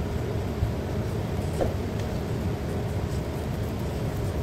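A steady low rumble, with soft sounds of dough being pressed and kneaded by hand on a granite countertop.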